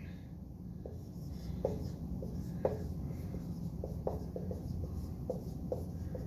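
Dry-erase marker writing on a whiteboard: a string of short, irregular squeaks and taps from the pen strokes, starting about a second in, over a steady low room hum.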